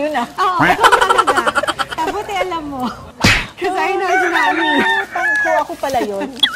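Women laughing and chattering without clear words, with one sharp smack, like a hand clap or slap, a little over three seconds in.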